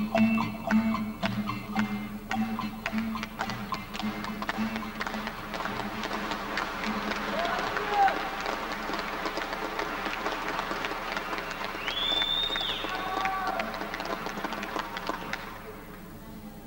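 Acoustic guitar notes ending a song in the first few seconds, giving way to a long round of audience applause with a shout or two and a whistle-like call, which dies away just before the end.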